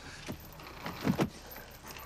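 Plastic storage box being loaded into a car boot: light knocks and clatter as it is set down, the loudest two knocks close together about a second in.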